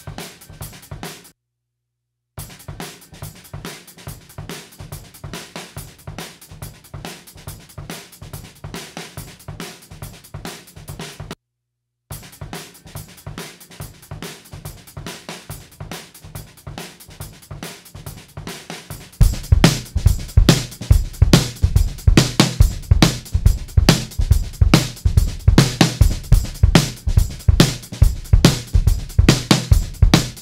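Playback of a live drum kit recording: a busy jazz fusion groove of kick, snare, hi-hat and cymbals, heard through a single room mic (a U47 vocal mic left up in the room). It stops briefly twice, then becomes much louder and heavier in the low end about 19 seconds in.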